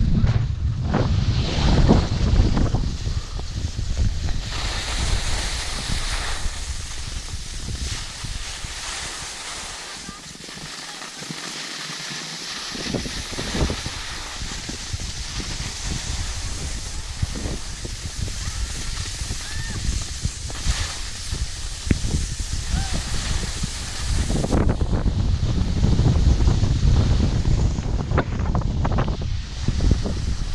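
Wind buffeting a moving camera's microphone, with a steady hiss of skis sliding over packed snow. The low wind rumble drops away for a couple of seconds a third of the way in, then returns.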